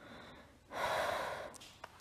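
A woman takes one audible deep breath close to the microphone, lasting about a second.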